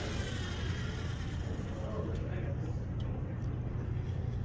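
LEGO Mindstorms EV3 robot's motors whirring as it drives and turns on a tabletop, over a steady low hum, with a few faint clicks in the second half.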